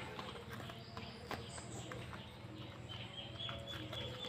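Durian husk being pried apart by hand and worked with a knife: a string of faint, irregular clicks and crackles as the spiny rind splits. A low steady hum runs underneath, and a thin high squeak comes about three seconds in.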